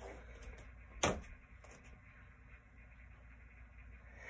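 Quiet room with a low steady hum, broken once about a second in by a single short, sharp knock or click.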